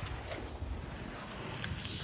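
An elephant chewing a whole watermelon in its mouth: a few faint crunching clicks.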